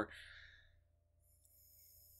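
A man's soft breathy exhale trailing off after a laugh, fading out within the first second, followed by a faint high hiss.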